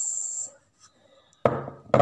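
Aerosol hair-removal spray can hissing steadily and cutting off abruptly about half a second in. After a short silence come two sudden knocks or rubs near the end.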